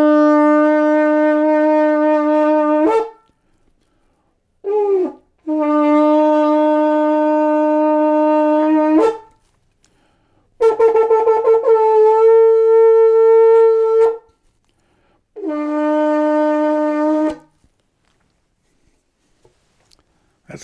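A long, curved shofar blown in a series of loud, steady blasts with pauses between them. There are about five blasts: a long low note ending about 3 s in, a brief note that falls in pitch, another long low note, a blast on a higher note that wavers as it starts, and a shorter low note.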